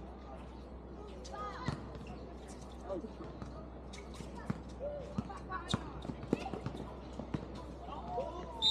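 Basketball bouncing on an outdoor court, irregular knocks every half second to a second, with faint, scattered voices from players and a steady low hum underneath.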